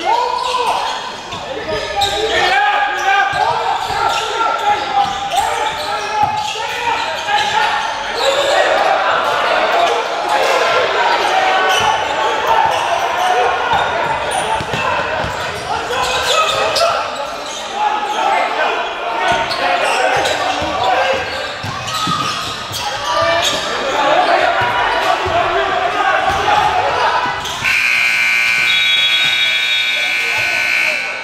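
Basketball game in a gym: spectators talking and shouting over the thump of the ball being dribbled on the hardwood. Near the end, the scoreboard buzzer sounds a steady high tone that runs on through the end and marks a stop in play.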